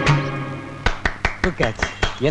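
A terracotta clay water pot tapped by hand: a quick run of about seven sharp, hollow knocks, each with a short ring, as the pot is sounded. Film background music fades out just before the taps begin.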